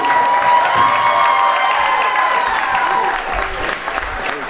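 Audience applauding as a comedy set ends, with a long, high held vocal note or cheer over the clapping that fades out about three seconds in.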